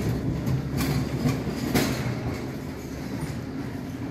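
Wheeled ambulance stretcher being pushed over a hard floor: a steady rumble of rolling wheels with a few sharp rattling knocks from the frame, easing off a little in the second half.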